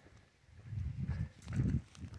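Footsteps of a person walking on a paved road, heard as a few soft, low thuds picked up by a handheld camera.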